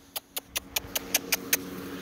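A quick run of about eight sharp clicking kiss-calls made with the mouth to call dogs over, about five a second, over a faint steady hum.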